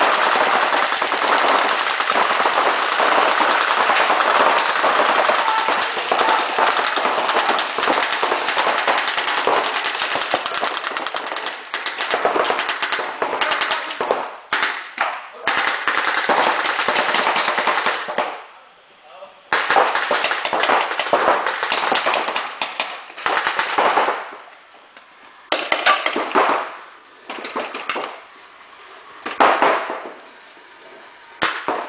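Several reball paintball markers firing rapid volleys in a large sports hall. The fire is continuous for the first dozen seconds, then breaks into separate bursts with short pauses.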